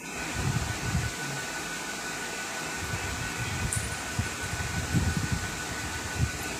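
A steady whir like an electric fan running, with a faint, thin, steady tone and a few soft low thumps, a cluster about half a second in and more near the end.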